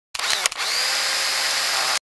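Edited intro sound effect: a dense, hissy whoosh with a sharp crack about half a second in. A faint tone glides up and holds steady, then the whole sound cuts off suddenly.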